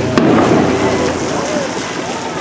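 A single sharp firework bang just after the start, amid the voices of a crowd of spectators talking.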